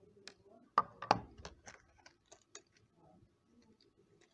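Small hard clicks and taps from handling a plastic battery tester and hearing-aid battery blister cards: two sharp clicks about a second in, then a quick run of lighter ticks that fades out.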